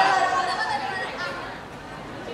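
Only speech: overlapping voices chattering, fading to a quieter murmur after about a second.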